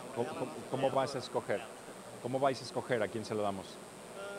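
Quiet, indistinct conversation between men, heard faintly away from the microphone.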